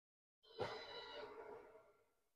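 A faint guitar chord struck about half a second in, ringing and fading away over the next two seconds.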